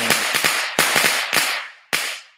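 Firecrackers going off in dense crackling bursts. A fresh burst starts about a second in and another near the end, each dying away over about half a second.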